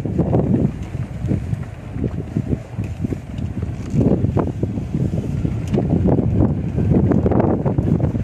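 Wind buffeting the microphone while filming from a moving car: an irregular low rumble of gusts mixed with the car's road noise.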